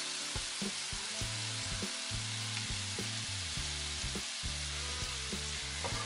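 Sliced vegetables sizzling steadily as they sauté in a frying pan over medium heat with a little water and soy seasoning. Low steady tones run underneath, shifting in pitch every second or so.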